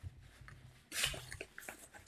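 Handling noise from a padded camera-lens case: a brief scraping rustle about a second in, followed by a few light clicks.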